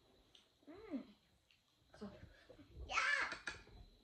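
Children's wordless vocal sounds at a meal: a short sliding call about a second in, then a louder, high, bright cry or squeal around three seconds in.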